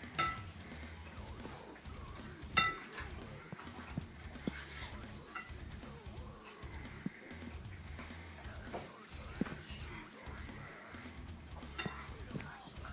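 A metal fork clinking and scraping against a glass mixing bowl while eating: two sharp, ringing clinks, one just after the start and one about two and a half seconds in, then lighter taps and scrapes.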